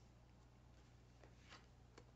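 Near silence with faint handling of Cigano oracle cards: a few light ticks and rustles about a second and a half in, as a card is slid from the fanned deck on the cloth.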